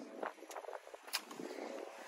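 Quiet rustling with a few short sharp clicks as the driver's door of a 2021 Ford Explorer ST is opened and someone climbs into the seat.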